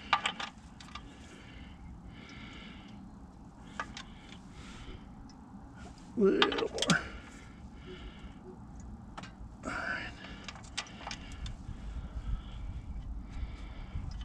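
Socket ratchet clicking in short runs as an oil pan drain plug is turned in and snugged, with scattered metallic clinks of the tool. A short burst of voice comes about six seconds in.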